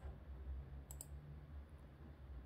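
Faint room tone with a low hum, and two small sharp clicks in quick succession about a second in, followed by fainter ticks a little later.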